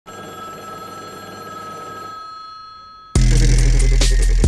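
A telephone ringing tone plays as the song's intro, steady and then fading over its last second. About three seconds in, a loud electronic beat with heavy bass and drums cuts in.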